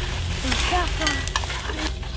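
Scraping and rustling with scattered sharp clicks over a steady low rumble, with a few short chirps through the middle.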